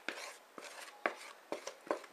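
About half a dozen light clicks and taps from a plastic mixing bowl and a disposable aluminium foil pan while thick cake batter is poured and guided in by hand.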